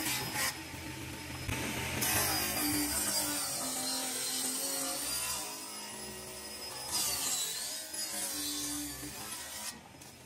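A hand or power tool cutting or shaping wood in short edited stretches that start and stop abruptly, with background music under it.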